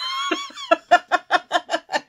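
A woman laughing heartily: a high-pitched squeal for about half a second, then a run of quick rhythmic "ha" bursts, about six a second.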